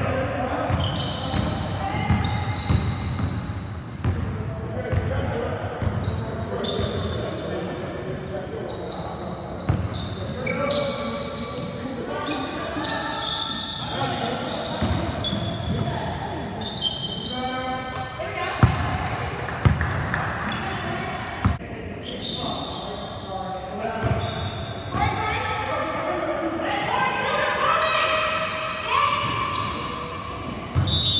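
Basketball bouncing repeatedly on a hardwood court during play, with short high sneaker squeaks and players calling out, in a large gym.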